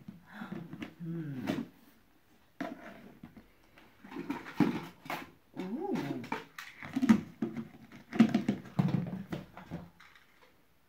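Wordless vocal sounds, repeated rising-and-falling calls with a short pause about two seconds in, mixed with light clicks and knocks of a plastic bucket lid being handled.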